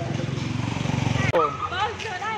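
A motorbike engine running close by, its low pulsing sound growing louder until it cuts off suddenly a little over a second in. High women's voices calling out follow.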